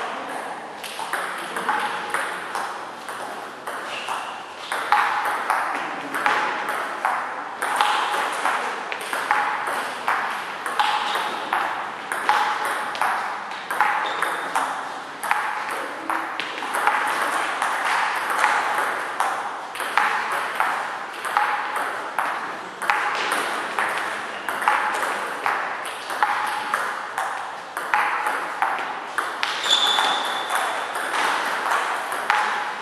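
Table tennis rallies: the celluloid ball clicking off the players' rubber bats and bouncing on the table, about two hits a second, with a short lull a few seconds in.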